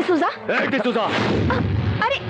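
Loud wordless human vocal sounds with strongly wavering pitch, over a deep rumbling burst through the middle.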